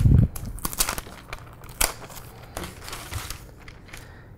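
A thump right at the start, then parchment paper rustling and crinkling in short bursts as it is lifted and slid aside on the counter.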